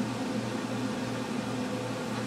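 Steady low hum with an even hiss: continuous background machine or room noise, with no separate events.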